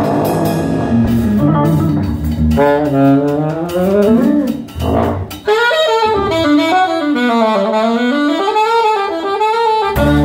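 Alto saxophone soloing live with bending, wavering notes over bass and drums. About halfway through the drums and bass drop out and the saxophone plays on almost alone.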